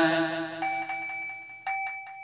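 A small bell is struck twice, about half a second in and again near the end, each time ringing on with a steady tone. The tail of the chanting voice is fading out under the first strike.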